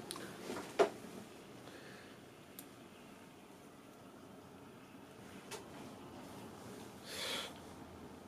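Quiet room tone with faint handling noises: a few small clicks as the earbuds and their buttons are touched, and a short breathy noise near the end. The music playing in the earbuds is not heard.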